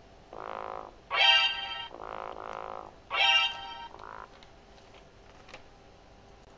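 iPhone playing the FOBO app's RemindMe out-of-range alarm: an electronic tone alternating between a lower and a higher note, about five short notes over four seconds, then stopping. It signals that the paired Bluetooth tag has gone out of range of the phone.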